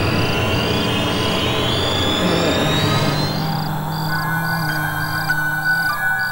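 Suspense background score: a slowly rising tone over the first half, then steady held low and high tones, under a short high pulse that repeats about twice a second.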